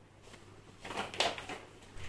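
Household items being picked up from a plastic shopping bag: light rustling with a few sharp knocks and clicks about a second in.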